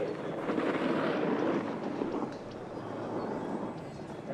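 Snowboard sliding and carving through turns on packed snow, a steady scraping hiss that eases off slightly after the first second or two.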